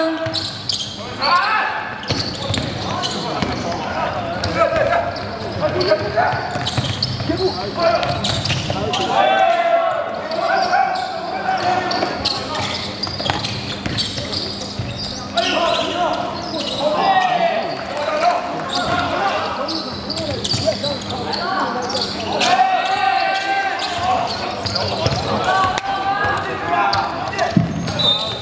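Live basketball game sound on a hardwood court: the ball bouncing as it is dribbled and short sharp knocks, amid shouting voices.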